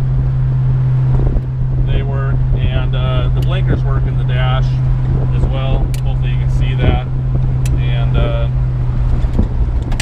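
1969 Dodge Dart GT convertible under way with the top down: a steady engine and road drone heard from inside the open cabin.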